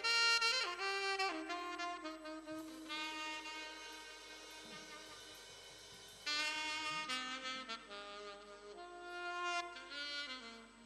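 A group of saxophones playing a slow melody in long held notes, each phrase stepping down in pitch before settling on a sustained note; a new, louder phrase comes in about six seconds in.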